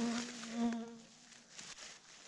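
A flying insect buzzing past: a steady low hum for about a second that then fades away.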